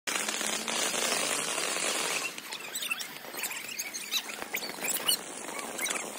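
Ground fountain firework spraying sparks: a dense hiss for about two seconds, then quieter, scattered crackling.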